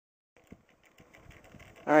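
Faint outdoor background noise with one small click about half a second in, then a man starts speaking near the end.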